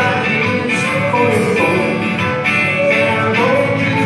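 Live acoustic country band playing: strummed acoustic guitars with a bowed fiddle, at a steady beat.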